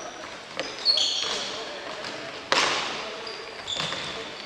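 Indoor futsal play on a wooden gym floor: shoes squeak briefly about a second in, then the ball is struck with a sharp, loud thud about two and a half seconds in, ringing in a large hall, and there is a smaller knock near the end.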